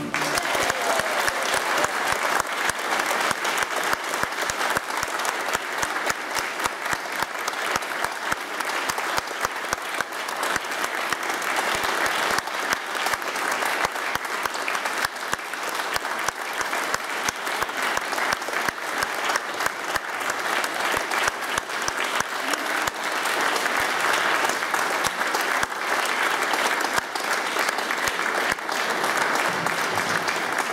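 Audience applauding, a steady dense patter of many hands clapping that neither builds nor fades.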